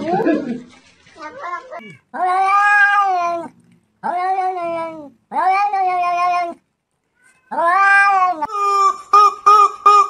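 Domestic cat giving four long, drawn-out meows, each about a second long and rising then falling in pitch. Near the end a quick run of short pitched calls follows.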